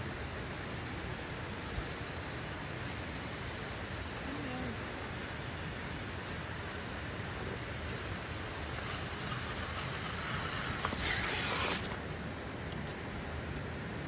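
Steady outdoor background hiss, with a short, louder rustling noise about eleven seconds in.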